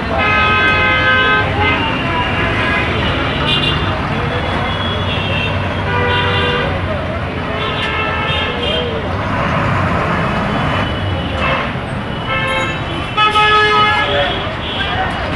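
City street traffic: bus and vehicle engines running steadily, with vehicle horns honking again and again, one long blast near the start and another run of honks near the end.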